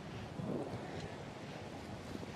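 Steady rushing noise of wind on an outdoor microphone, with a faint voice briefly about half a second in.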